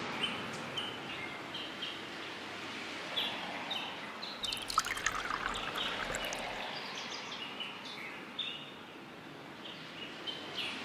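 Wine poured from a glass bottle into a paper cup partway through. Underneath are many short bird chirps and a steady faint outdoor hiss.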